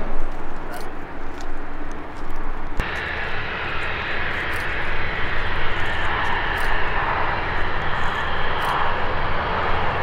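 Steady rushing vehicle or engine noise with a low hum. It changes abruptly about three seconds in, then carries on evenly.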